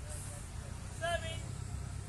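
A distant high-pitched voice calls out once, about a second in, over a steady low rumble.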